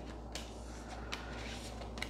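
Faint rustling and sliding of tarot cards being picked up off a cloth-covered table, with a few soft card strokes over a low steady hum.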